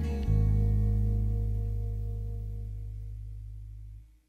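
Instrumental karaoke backing track: a low chord struck about a third of a second in rings on, slowly dying away until it fades out at the end.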